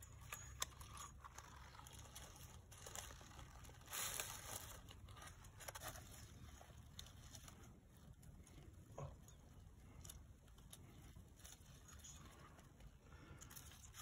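Faint rustling and crunching in dry fallen leaves, with a louder rustle about four seconds in.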